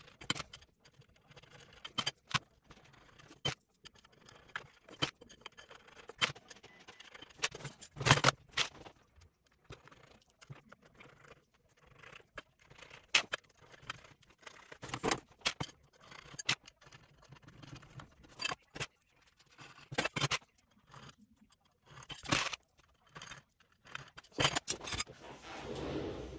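Black 2020 aluminium extrusions and M5 steel screws being handled: irregular metallic clicks, clinks and short scrapes, with a few louder knocks as the bars are set down and the screws are fitted into their tapped ends.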